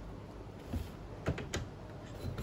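A few light plastic clicks and taps from a toy building-brick farmer figure and its parts being handled and pressed into place.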